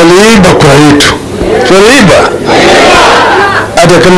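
A man speaking loudly into a handheld microphone, amplified. In the middle a noisier crowd shout runs for about a second and a half before the speech resumes.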